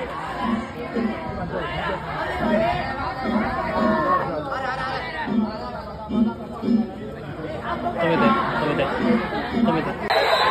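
Crowd of festival-goers and pullers talking and calling out over one another in a lively street crowd, with a low pulse recurring about once a second, often in pairs.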